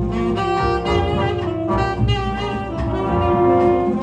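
Tenor saxophone playing a slow melody of long held notes over jazz big-band accompaniment with upright bass.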